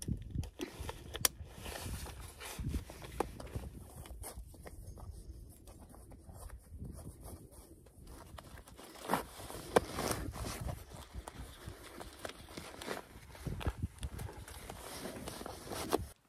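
Handling noise of putting on chest waders and wading boots: fabric rustling, a clip or buckle clicking, laces being pulled, and scattered sharp knocks as the boots shift on loose stones, over a low rumble.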